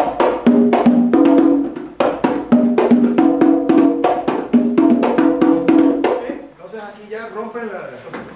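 Percussion playing a Mozambique rhythm: quick strokes with sharp clicks and short ringing drum tones at two pitches, in a syncopated pattern that stops about six seconds in, followed by a man's voice.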